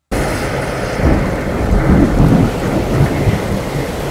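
Thunderstorm sound effect: steady rain with rolling thunder, cutting in suddenly and rumbling loudest in the middle.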